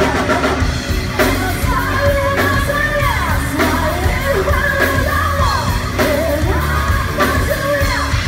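A rock band playing live, with a drum kit and guitar under a singer whose voice comes in about a second in with long, pitch-bending sung lines.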